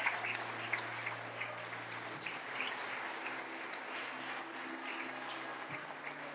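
Church congregation applauding, louder at first and then settling to a lower, steady clapping. Underneath, a soft sustained musical chord is held, changing twice.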